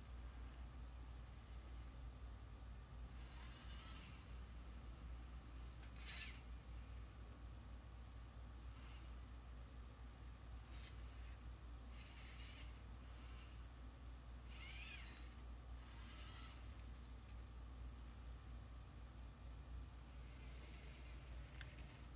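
Small hobby servo motors driving an animatronic Teddy Ruxpin's neck, whirring faintly in short bursts every few seconds as they tilt and turn the head, some bursts with a brief rising or falling whine.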